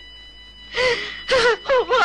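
An elderly woman's distressed voice: after a short pause, a breathy gasp comes about a second in, followed by brief wavering crying sounds.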